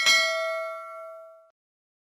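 Notification-bell 'ding' sound effect, struck once and ringing with several tones before fading out about a second and a half in.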